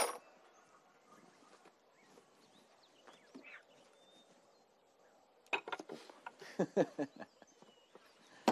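A single sharp knock right at the start, then a quiet stretch, then a person's voice in short non-word bursts about five and a half seconds in, lasting under two seconds.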